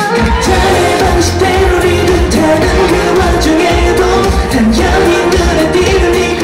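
K-pop boy-group song with male singing over a heavy bass beat that kicks in at the start.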